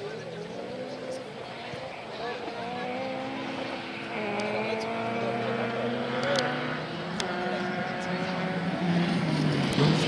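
Audi Quattro rally car's turbocharged five-cylinder engine revving and changing up and down through the gears as it approaches, growing steadily louder. A few sharp clicks come in the middle.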